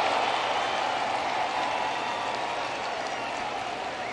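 Ballpark crowd cheering and applauding, slowly dying down, in reaction to a throwing error that sails past first base.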